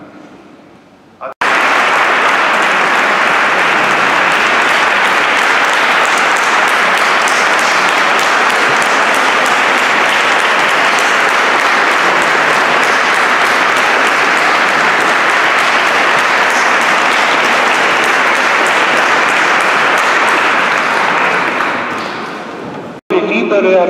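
Congregation applauding in a large church: a steady wall of clapping that breaks out suddenly about a second in, holds for some twenty seconds and fades near the end.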